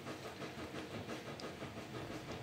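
Quiet room tone: faint steady background noise with a light, even flutter.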